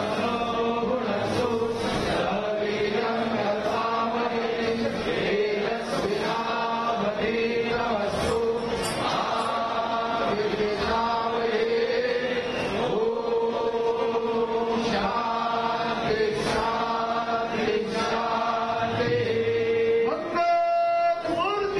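Hindu devotional chanting over a steady held drone, with short percussive strikes every second or two.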